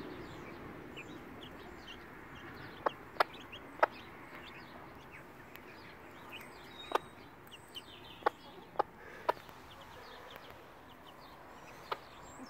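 Silkie mother hen giving short, sharp single clucks, about seven scattered through, with faint high chirping in the background.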